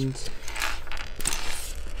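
Loose LEGO plastic pieces clicking and rattling against each other and the tabletop as a hand picks through them, in several short bursts.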